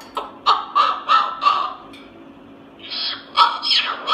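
Moluccan cockatoo babbling to itself in a speech-like mimicking voice that sounds like a devil talking. It gives a quick run of short syllables, pauses for about a second, then starts again near the end.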